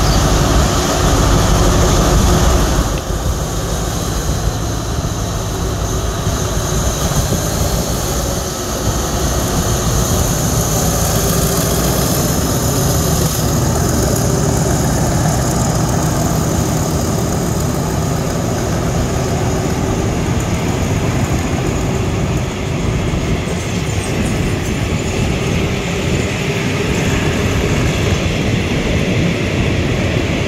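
Alstom diesel-electric locomotive of the State Railway of Thailand pulling a passenger train slowly past at close range as it arrives to stop, its diesel engine running with a low drone. The passenger coaches follow, wheels rolling on the rails. The sound is loudest for the first few seconds, then steady.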